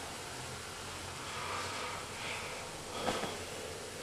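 Faint steady fizzing of carbon dioxide foam in a glass beaker as vinegar reacts with dissolved baking soda (sodium bicarbonate), with one light tap about three seconds in.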